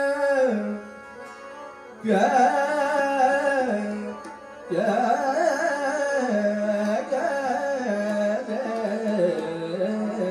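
Male voice singing Hindustani classical vocal in Raag Yaman, with harmonium following the voice and tabla accompaniment. The singing runs in phrases of held notes with gliding ornaments, and drops off briefly just after the start and again around four seconds in.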